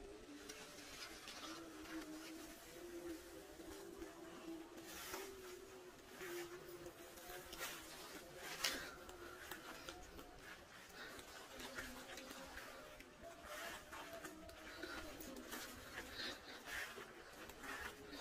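Faint footsteps and rustling of grass and leaves, a soft scuff now and then, the clearest about a third and halfway through, over faint distant music.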